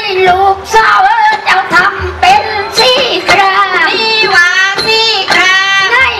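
Southern Thai Manora (Nora) dance music: a high voice sings long, wavering melismatic lines over a steady held note, with low drum strokes and light percussive clicks.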